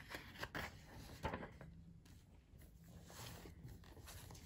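Pages of a textbook being handled and turned: a few soft paper rustles, a light tap about a second in, then a longer slide of paper near the end.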